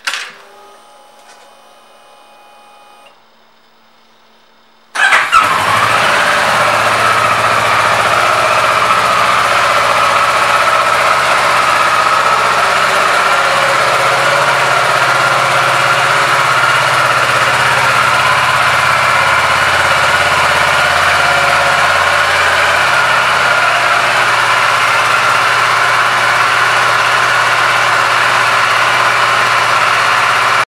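Ignition key switched on with a click and a faint hum for about three seconds, then the 2012 Kawasaki Ninja 650's parallel-twin engine starts about five seconds in and settles into a steady idle.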